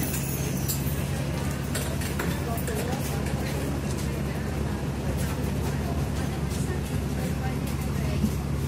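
Diesel engine of a double-decker bus running steadily, heard inside the passenger cabin as a constant low hum, with background voices and a few light clicks.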